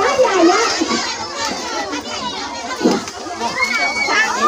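A crowd of children shouting and chattering, many high voices overlapping at once, with a rising call near the end.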